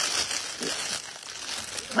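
Clear plastic packaging crinkling as it is handled, a little louder in the first second.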